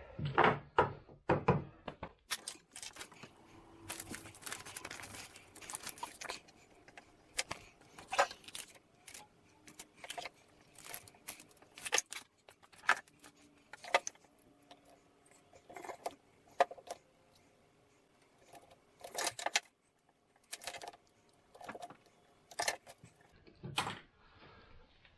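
Hand tools and a wooden round being handled on a tiled workbench: scattered clicks, knocks and clatter as things are picked up and set down, with quiet pauses between.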